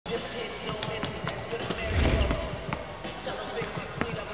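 A basketball bouncing on a court, several irregular sharp bounces, with a deep boom about two seconds in, over music.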